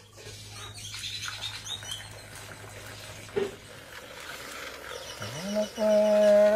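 Quiet night-time farm ambience with a few faint bird chirps and one soft thump about three and a half seconds in. Near the end a man's voice slides up into a long held chanted note.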